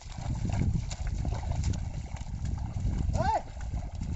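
A pair of bullocks and a plough sloshing and squelching through a flooded paddy field, a dense low trudging noise of hooves in wet mud. About three seconds in, a short rising-then-falling voice call cuts through once.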